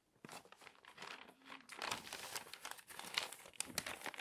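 Glossy magazine paper being handled and crinkled. It is faint at first and builds about two seconds in, with sharp crackles near the end.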